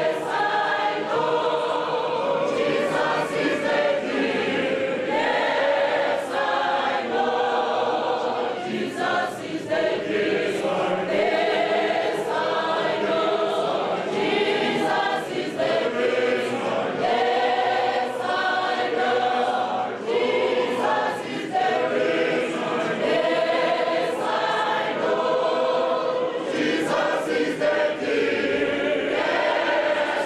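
A church choir, mostly women's voices, singing a hymn together, steady and continuous.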